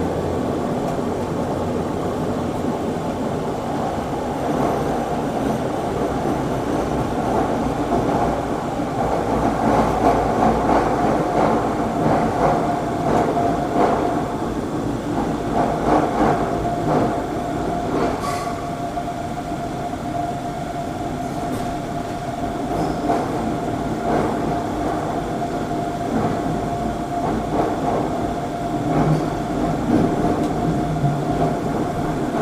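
Taoyuan Airport MRT express train running through a tunnel, heard from inside the driver's cab. Wheels rumble steadily on the rails, a steady high whine grows clearer about a third of the way in, and a few clicks sound here and there.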